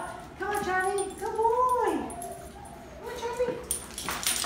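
A dog whining and yipping in excitement, mixed with a person's excited, high-pitched calls, in two rising-and-falling stretches.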